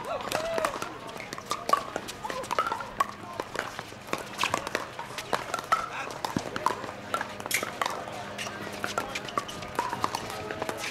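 Pickleball rally: paddles hitting the hard plastic ball in a quick series of sharp pocks at irregular intervals, with voices in the background.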